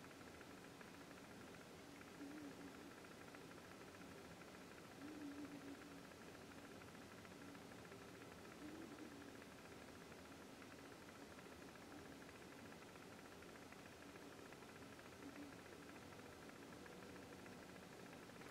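Near silence: room tone with a faint steady hum and a few faint, brief soft sounds.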